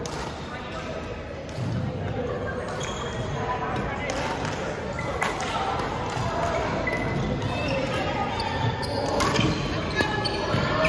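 Badminton rackets striking a shuttlecock during a doubles rally, several sharp hits a second or so apart, with players' footsteps on the gym floor. The hall is reverberant.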